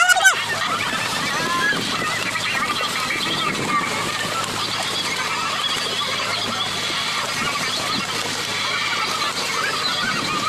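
Dense, continuous splashing and bubbling of water churned by a mass of fish thrashing inside a hauled-in purse-seine net, a steady chatter of short chirping splashes. A steady low hum runs beneath it.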